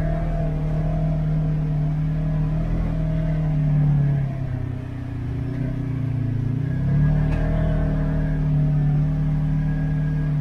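Off-road vehicle's engine running while driving, heard from inside the cab. The engine note sags and quietens about four and a half seconds in, then picks back up at about seven seconds.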